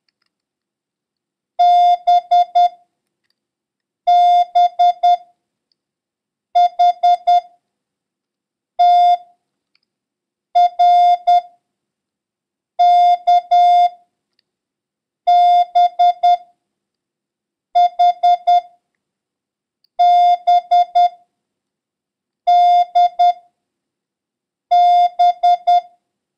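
Morse code practice tone: a single steady beep near 700 Hz keyed into dits and dahs, one letter about every two and a half seconds. It is a copying drill of letters featuring B, and the first letter is a dah followed by three dits.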